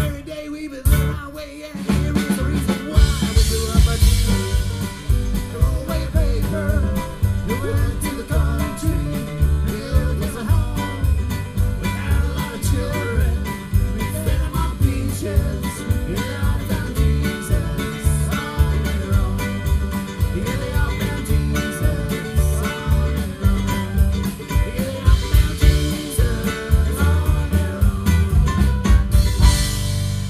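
A live acoustic string band playing through a PA: acoustic guitar, mandolin and upright bass. The full band comes in about two seconds in, with a strong, steady bass pulse.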